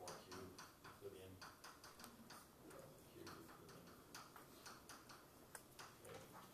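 Chalk tapping and scratching on a blackboard as an equation is written: a faint, irregular run of sharp clicks.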